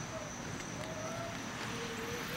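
Quiet, steady outdoor background noise with a few faint, short whistle-like tones.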